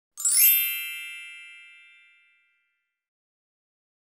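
A bright chime sound effect: a quick upward glittering sweep just after the start, then a chord of several high ringing tones that fades away over about two seconds.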